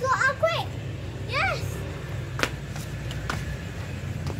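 Children's voices: a girl finishing "let's go" and another short call, then a single sharp click about two and a half seconds in, over a steady low hum.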